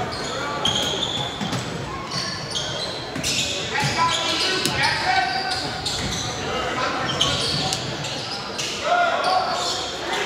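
Basketball dribbling on a hardwood gym floor, with sneakers squeaking and players and spectators calling out in the echoing gym.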